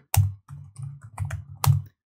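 Computer keyboard keystrokes typing out a short word, a quick run of clicks with the loudest keypresses near the start and near the end.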